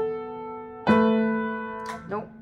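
Upright piano played slowly: a chord struck about a second in and left to ring and fade, with the next notes coming in just at the end.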